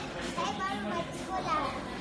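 A young girl's voice close to the microphone, in short high-pitched bursts of speech or vocal sounds over low room noise.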